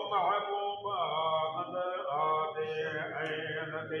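Men chanting a Sindhi molood madah, a devotional praise song, in unaccompanied voices with long, wavering held notes.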